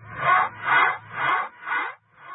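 Villain-style evil laughter added as a sound effect: slow, deliberate 'ha' pulses, about two a second, four of them.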